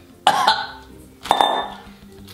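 A man coughing twice, about a second apart, in reaction to tasting dry salmon dog kibble.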